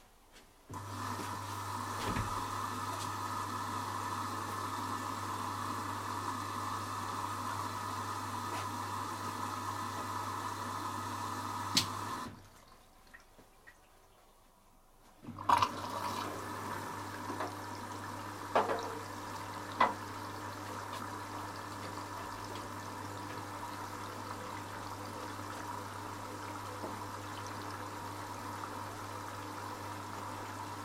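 Candy RapidO washing machine taking in water at the start of its cycle: a steady rush of inflowing water with a low hum. It stops abruptly about twelve seconds in and starts again about three seconds later, with a few clicks and knocks.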